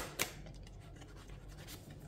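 Faint rubbing and scraping of tarot cards being handled as a card is slid off the deck, with two light card clicks right at the start.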